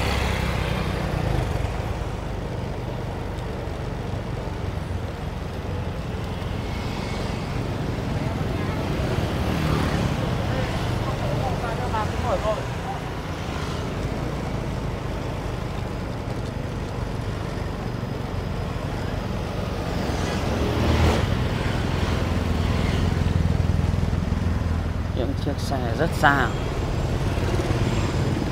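Street ambience of motor scooters and cars passing, a steady engine and traffic rumble that grows louder for a few seconds past the middle, with brief snatches of passers-by talking.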